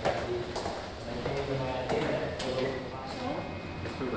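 Indistinct voices talking, with footsteps and a few sharp clicks and knocks on a hard floor.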